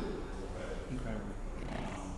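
Indistinct talking, with voices too unclear to make out words, over a steady low room rumble.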